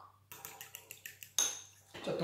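Metal fork beating an egg yolk with a little water in a small ceramic bowl: a quick run of light clicks of the tines against the bowl, with one louder ringing clink about one and a half seconds in.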